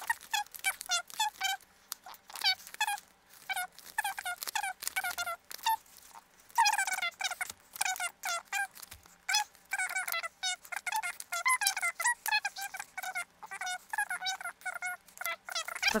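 A woman's voice counting aloud, sped up into rapid, high-pitched, squeaky chatter as her counting is fast-forwarded.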